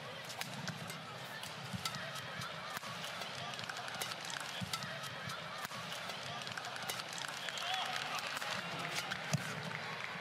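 Badminton rally: a string of sharp, irregular racket hits on the shuttlecock, with shoe squeaks and footfalls on the court mat over a low arena crowd murmur.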